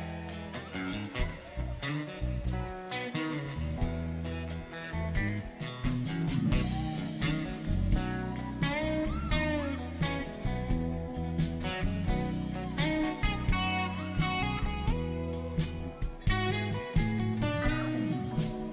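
A live rock band plays an instrumental jam: an electric guitar lead with bent notes over electric bass and a drum kit.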